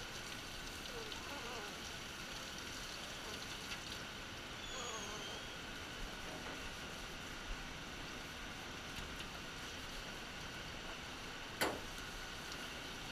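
Steady hiss of water spraying from a hand-held grooming-tub sprayer onto a small dog's coat, with a couple of faint falling whines from the dog. A single sharp knock near the end.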